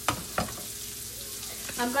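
Two sharp knocks of a kitchen knife chopping bell pepper on a wooden cutting board, about a third of a second apart, over the steady sizzle of sausage and bacon frying in a pan.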